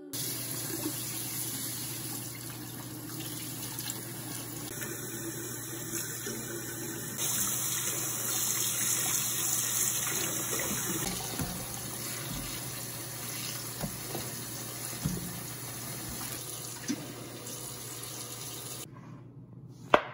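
Kitchen tap running into a sink as bok choy is rinsed under the stream, a steady rush of water that grows louder for a few seconds in the middle and cuts off near the end.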